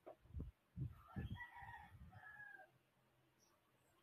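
A faint rooster crow in the background, one call lasting about a second and a half, preceded by a few soft low thumps.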